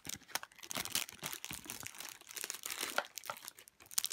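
Thin clear plastic packaging crinkling and crackling irregularly as hands handle and squeeze bagged squishy toys.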